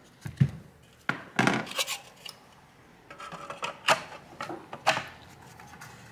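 Sharp clacks and clinks, a dozen or so scattered knocks, some with a short ring, as the black blower shroud of an AMD RX 480 reference graphics card is handled and fitted down over the card's finned heatsink.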